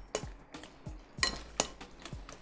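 A utensil stirring a thick tuna muffin batter in a glass mixing bowl, with soft scraping and a few clinks against the glass; the two loudest clinks come a little after the middle.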